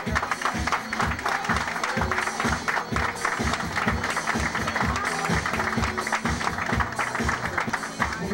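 Loud dance music with a steady kick-drum beat playing over the club's sound system.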